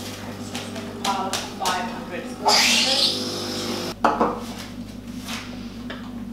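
Espresso machine steam wand hissing for about a second and a half while milk is steamed for a flat white, then shutting off with a clunk. Metal milk jug and cups clink around it.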